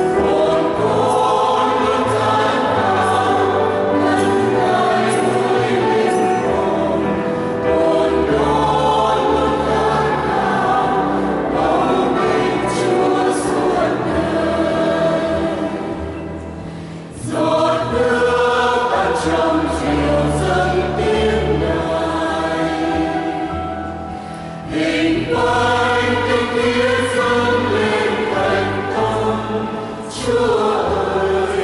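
Mixed choir of women and men singing a Vietnamese Catholic hymn. The singing tails off briefly twice, about halfway through and again near the end, before the next phrase comes in.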